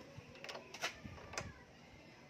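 A few faint metallic clicks and knocks, about four in a second, as a 19 mm wrench is fitted onto a scooter's front axle nut to loosen it.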